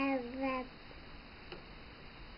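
A drawn-out, sing-song voice holding a vowel that falls slightly in pitch, ending a little under a second in. After it comes quiet room tone with one faint click.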